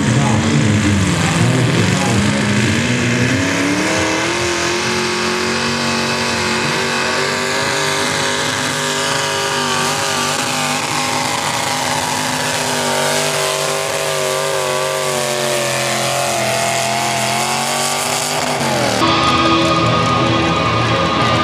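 Modified pulling tractor's engine at full throttle hauling a weight-transfer sled: the revs climb over the first few seconds as it launches, hold high and wavering under heavy load, then fall away shortly before the end.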